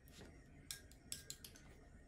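Near-silent room tone with a few faint, sharp clicks about a second in, from the watercolor brush and painting tools being handled on the desk.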